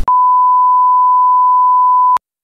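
A single steady, unbroken high-pitched beep: the test tone that goes with TV colour bars, edited in over the picture.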